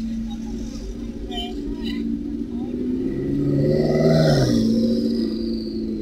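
Vehicle engines in street traffic. One engine swells louder and its pitch drops as it drives past about four and a half seconds in, over a steady engine hum.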